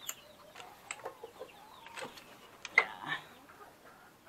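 Bamboo slats of a chicken-coop door knocking and rattling as the door is pushed open, with a sharp knock just under three seconds in. A few soft chicken clucks come in between the knocks.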